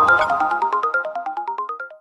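News-channel logo jingle: a fast run of short pitched notes, about ten a second, climbing in repeated rising runs over a low drone that stops about half a second in, then fading out near the end.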